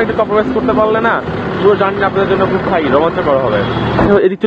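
A man talking over a steady low hum of an idling vehicle engine.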